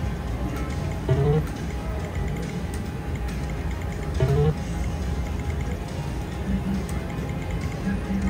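Casino floor ambience: background music and the murmur of voices around, with two brief rising sounds about a second in and again about four seconds in.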